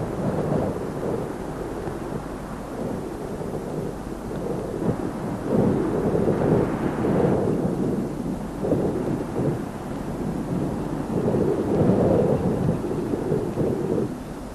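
A low rumbling noise that swells and fades irregularly several times, loudest about halfway through and again near the end.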